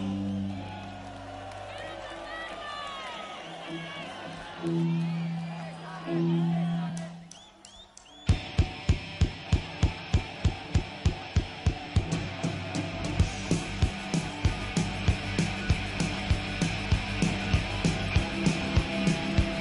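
Live rock concert between songs: crowd whistling and cheering over a few held guitar notes. About eight seconds in a drum kit starts a steady beat, about two strokes a second, and the band comes in behind it.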